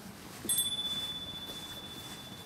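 A single high chime struck about half a second in, ringing on as one clear tone that slowly fades.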